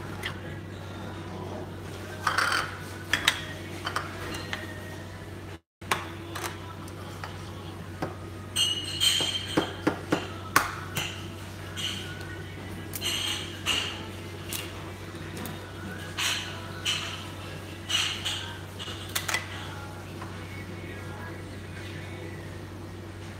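A raw egg being tapped and cracked into a small ceramic bowl: a scattered run of light clicks and clinks of eggshell and dishes, over a steady low hum.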